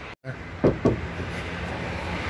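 The driver's door of a new Chevrolet Cobalt being opened: two quick clicks of the handle and latch, then steady background noise.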